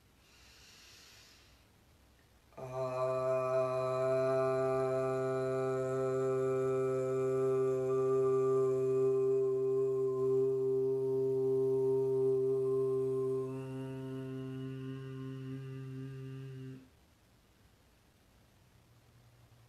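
A woman chanting one long Aum on a single steady pitch for about fourteen seconds, after a soft in-breath. About three quarters of the way through, the open vowel closes into a quieter hummed "mm" before the tone cuts off.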